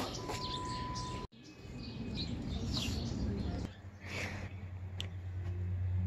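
A steady high-pitched beep lasting about a second that cuts off abruptly, followed by quiet outdoor background with a few faint bird chirps. About halfway through, a low steady hum comes in.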